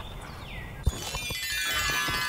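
Scene-transition music sting: a brief falling swoop and a click, then a chiming run of many held tones building up through the second half.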